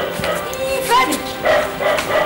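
Background music with a dog barking and yelping over it.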